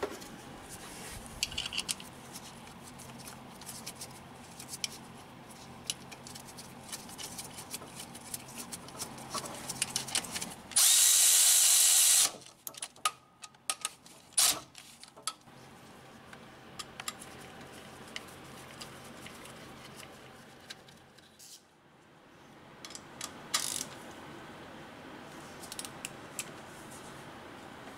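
Cordless ratchet running a bracket bolt in, one steady high-pitched run of about a second and a half near the middle, amid short clicks and knocks of tool handling.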